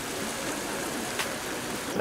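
Steady hiss of rain falling, with one faint tick about a second in.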